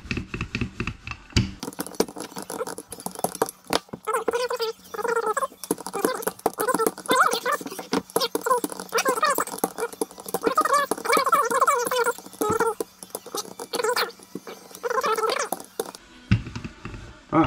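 Wooden handled rolling pin rolling out noodle dough on a floured countertop, with frequent sharp clicks and knocks from the pin and its handles. From about four seconds in, a high, wavering voice-like sound comes and goes in the background.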